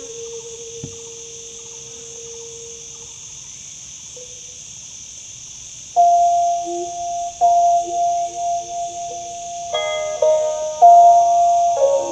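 Phin pia (Lanna chest-resonated stick zither) music: a single held note that wavers in pitch at first fades away over the first three seconds. After a lull, a much louder melodic passage of several notes together comes in about halfway and carries on to the end.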